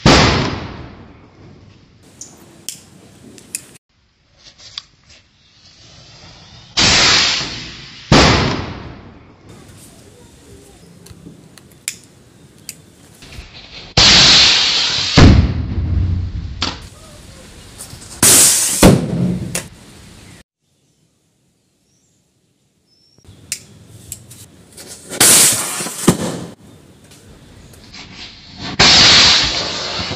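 Diwali firecracker rocket fired from a cardboard model plane: a loud rushing hiss, repeated in several bursts of a second or two each, with a few sharp cracks among them.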